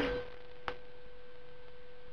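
A faint steady hum, one even tone like an electrical whine, with a single short click about two-thirds of a second in.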